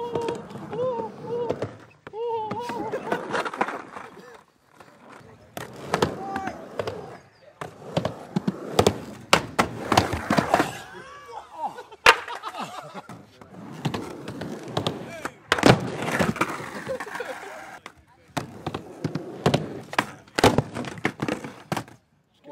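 Skateboard wheels rolling on a skatepark ramp, broken by repeated sharp impacts as boards and falling skaters slam onto the ramp surface, with voices shouting at times.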